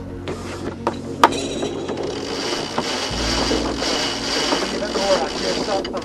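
A yacht's sheet winch being wound in, its pawls clicking: a few sharp clicks about a second in, then a dense run of rapid clicking over a steady low hum.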